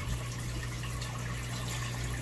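Aquarium water running steadily: filter outflow splashing into the tank and an air-stone bubble stream, with a steady low hum underneath.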